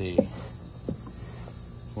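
Steady high-pitched insect chirring in the background, with two light taps from handling the sand-cast mold: a sharp one just after the start and a fainter one about a second in.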